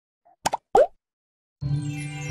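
Intro logo-animation sound effects: two quick clicks followed by a short pop that rises in pitch, then a brief silence and a sustained music chord that begins near the end.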